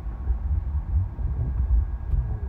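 Low, uneven rumble inside a car cabin as the car rolls slowly: engine and road noise.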